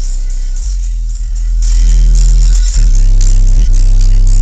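Bass-heavy music played very loud through a car's subwoofer system of four Rockford Fosgate Punch HX2 subwoofers, the deep bass notes dominating and getting louder about a second and a half in.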